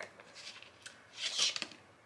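Cardboard gift box being handled, its surfaces rubbing: a faint rustle, then a brief scraping rustle with a few small clicks about one and a half seconds in.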